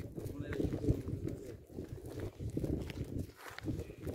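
Footsteps on brick paving as the person filming walks along, with indistinct voices in the background.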